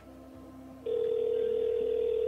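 Telephone ringing tone heard through a phone handset while a call waits to be answered: a steady tone that is off at first and starts again just under a second in.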